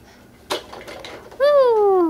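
A baby's voice making one drawn-out vocal sound that slides down in pitch, starting past the middle. About half a second in there is a single sharp clack, as of a hard plastic toy being knocked.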